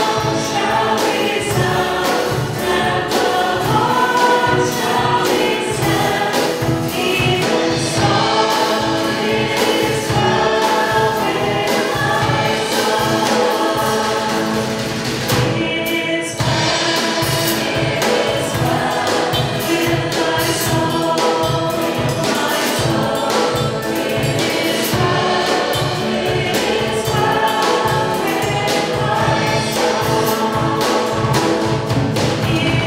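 A group of voices singing a hymn together, accompanied by a small band of piano, upright bass, drum kit and guitars keeping a steady beat. The singing breaks briefly between phrases about halfway through.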